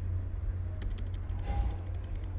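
Keystrokes on a computer keyboard: a quick run of key clicks starting a little under a second in, as text is deleted and retyped. A low, steady hum sits underneath.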